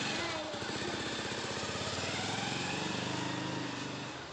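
Commuter motorcycle's engine running as the bike pulls away with a rider and passenger, fading a little near the end.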